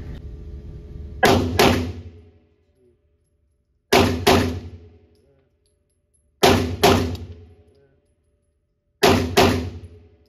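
Tisas 1911 Night Stalker 9mm pistol fired as four doubles: four quick pairs of shots, each pair about 0.4 s apart, with a couple of seconds between pairs. Each shot rings out in the reverberant indoor range.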